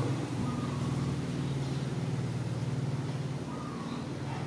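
A steady low mechanical hum, like a motor or engine running.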